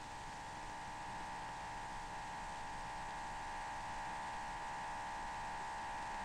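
Steady electrical hum, a held tone with fainter overtones that slowly swells, over the hiss of an old film soundtrack.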